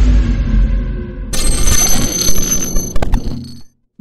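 Logo intro sound effects: a low boom dying away, then a bright ringing sting from about a second in, with a few sharp clicks near the end before it cuts off.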